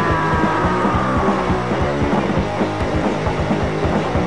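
Early-1980s hardcore punk demo recording: fast, steady drumming under distorted electric guitar and bass, with a held guitar note sliding slightly down and fading out about a second in.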